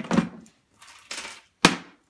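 Small metal screws clinking and rattling as they are handled, ready to bolt the wash-arm housing back into a dishwasher, with one sharp clink about one and a half seconds in.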